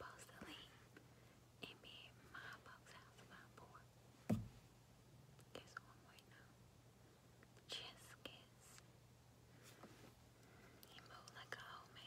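Near silence: faint whispering under a steady low hum, with one sharp knock about four seconds in.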